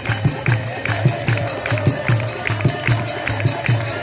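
Holi folk song (Holi geet) performed live: a fast, steady beat of drum strokes and hand claps, about four a second, under a held, wavering sung note.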